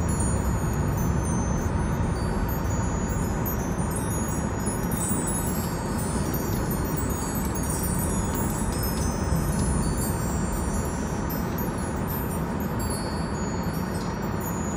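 Small metal chimes tinkling without a break over the steady low rumble of a car cabin.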